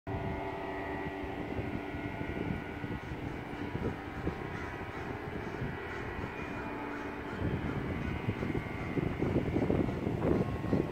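A steady drone made of several held tones, like a distant engine, with a few faint bird calls over it. About seven and a half seconds in the drone stops and an uneven, gusty rumbling takes over.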